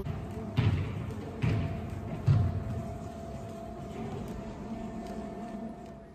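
Three dull thumps in the first two and a half seconds over a steady hum with a thin constant tone, in a large gym hall.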